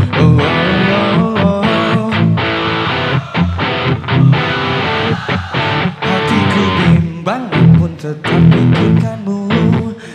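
A pop-rock band playing live, with guitar to the fore over bass and drums.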